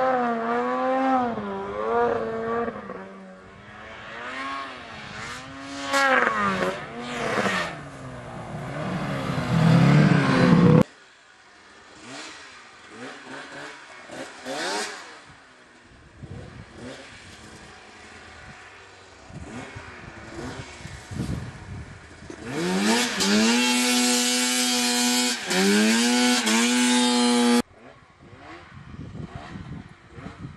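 Snowmobile engines revving, their pitch swinging up and down again and again. About eleven seconds in the sound cuts off abruptly to a quieter, fainter engine; then a loud engine climbs in pitch and holds at high revs until it cuts off sharply near the end.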